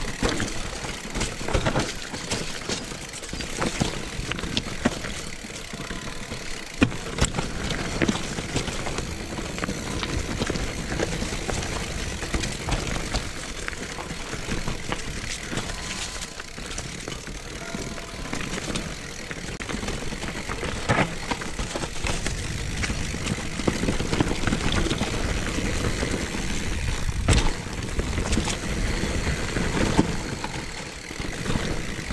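Mountain bike rolling down a rough dirt trail strewn with leaves and rocks: a steady rush of tyre and wind noise, with frequent clicks and rattles from the bike over bumps and several sharper knocks.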